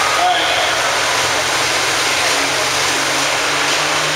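Pulling tractor's turbocharged diesel engine running loud and steady, echoing through an indoor arena, with crowd voices mixed in.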